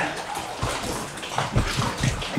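Lake water sloshing and lapping in a narrow sea cave around an inflatable raft, with a few low thuds about half a second in and again near the end.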